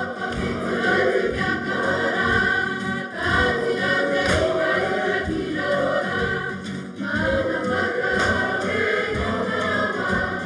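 Group of schoolgirls in a kapa haka group singing a waiata together, in long held phrases with short breaks about three and seven seconds in.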